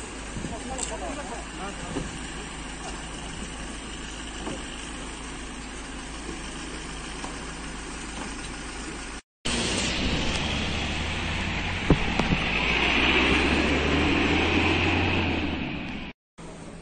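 Outdoor street noise with faint voices. After a brief cut, a Ford Transit van's engine is heard running as it pulls away, the noise swelling and then fading.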